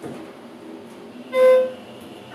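A Schindler 330A hydraulic elevator's car chime sounds once, a short single-pitched beep about a second and a half in, a little distorted. It plays as the car passes a floor on its way down, over a faint steady running hum.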